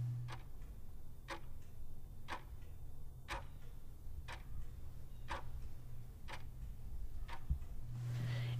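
Regular ticking, one sharp tick about every second, eight in all.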